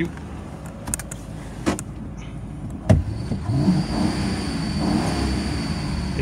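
Ford Crown Victoria Police Interceptor's 4.6-litre V8 idling, then revved about three seconds in, its pitch rising and held near 3,000 rpm, heard from inside the cabin. A few clicks and a sharp knock come just before the rev.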